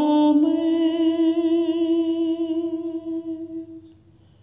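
A singer holding one long note of a devotional bhajan, steady in pitch with a slight waver, slowly fading out near the end.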